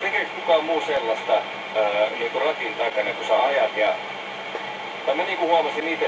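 Talk from a radio playing in the background, a speaking voice that sounds thin, with no bass, and carries on through the whole stretch.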